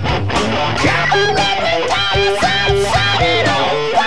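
Live rock band playing: an electric guitar plays a riff of bent notes from about a second in, over bass and drums.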